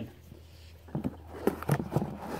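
Paper-wrapped penny rolls being handled: rustling with a few sharp clicks, starting about a second in.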